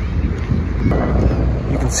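Wind buffeting the microphone: a steady, loud low rumble with a rushing haze above it. A word is spoken at the very end.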